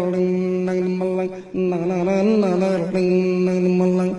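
A man's voice imitating a saz: a steady droning hum with a wavering melody above it, sung on nonsense syllables like "da da da" and "dımbırlank". It breaks off briefly about a second and a half in.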